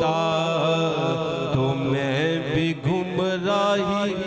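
A man's voice singing an Urdu naat, drawing out long, wavering, ornamented notes.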